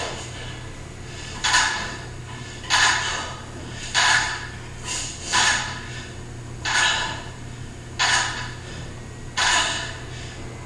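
A woman breathing out hard in a steady rhythm, about eight sharp exhales spaced a little over a second apart, in time with her dumbbell repetitions. A steady low hum runs underneath.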